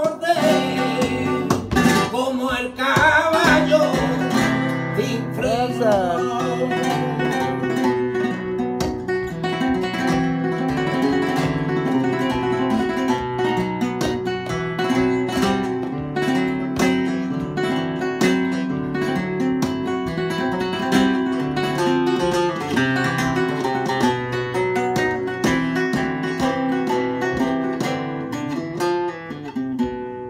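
Flamenco guitar playing bulerías por soleá. The singer's last sung phrase dies away a few seconds in, and the guitar carries on alone with sharp percussive strokes and hand-clapping (palmas) in time.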